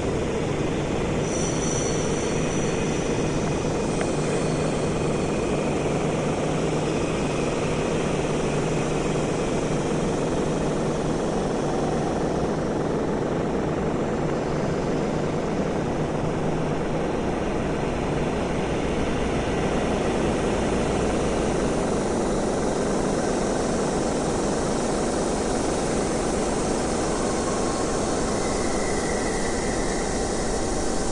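Experimental electronic music: a dense, steady noise drone with a low hum underneath that drops out a little past halfway.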